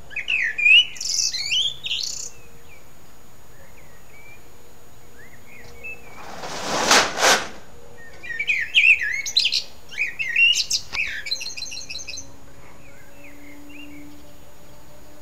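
A songbird singing: two bursts of quick warbled phrases, the second ending in a fast high twitter. Between them, about seven seconds in, a short loud rushing noise.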